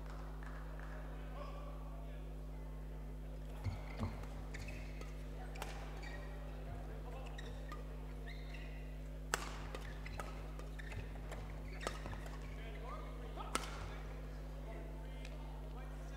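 Badminton rackets striking a shuttlecock during a doubles rally: a series of sharp, irregular hits a second or more apart, over a steady low hum, with faint voices.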